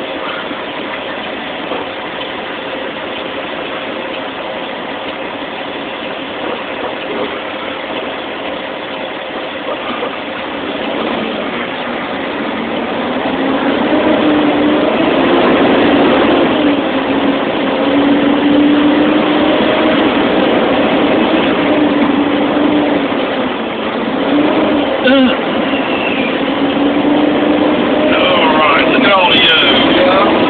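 Big truck's diesel engine running, heard from inside the cab, getting louder about halfway through as the truck pulls away. Its pitch rises, holds and dips as it works.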